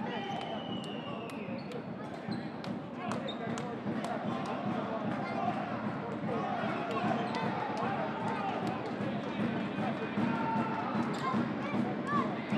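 A handball bouncing on an indoor court floor, heard as repeated sharp knocks, with voices from players and crowd underneath and a few brief squeaks.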